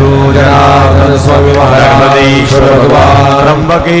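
A man's voice chanting a Sanskrit prayer into a microphone, drawing out long held notes that glide slowly in pitch.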